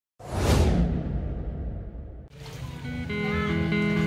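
A logo-intro sound effect: a sudden whoosh with a deep boom that fades away over about two seconds. Then background music begins with steady held notes.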